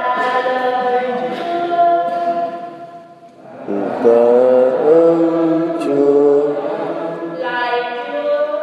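Slow, chant-like hymn sung by a choir in long held notes, with a brief breath-pause about three and a half seconds in before the singing resumes.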